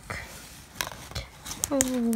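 Plastic zip folder being handled: faint rustling with a few light clicks from the zipper's ring pull.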